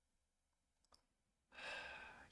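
Near silence with one faint click about a second in, then a man's breathy sigh near the end.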